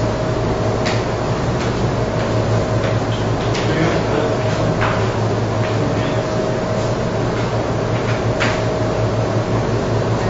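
Steady low electrical hum with a thin steady tone above it and constant hiss, with a few faint clicks now and then.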